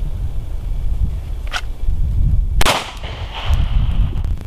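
A single handgun shot about two-thirds of the way in, sharp and sudden, with a short echo trailing after it.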